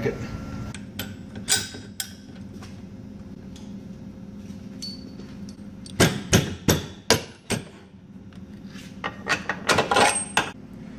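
Steel control arm and its flex end clanking and knocking against a steel frame bracket as it is worked into place by hand. There are a few light clicks early, then a quick run of about six sharp metallic knocks between six and seven and a half seconds in, and a few more near the end.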